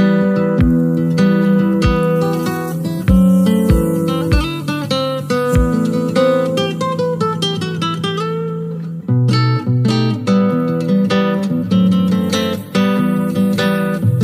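Music with plucked and strummed guitar, with low bass thumps through the first six seconds and a heavier bass line coming in about nine seconds in.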